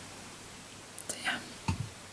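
A woman speaking a few words softly, almost in a whisper, then a short low thump near the end, over a faint steady hiss.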